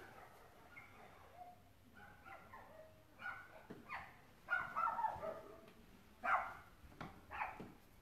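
Several dogs barking and yipping in short bursts, faint as heard from inside the house, coming thicker from about the middle on.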